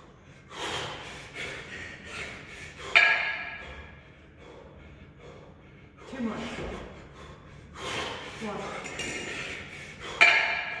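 Hard breathing and forceful exhales during double kettlebell long cycle with two 28 kg kettlebells, late in a ten-minute set. About three seconds in, the two kettlebells knock together in a sharp metallic clank that rings briefly; this is the loudest sound.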